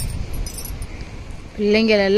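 Small twig fire crackling with a few short, high snaps under a low wind rumble on the microphone; a voice starts speaking near the end.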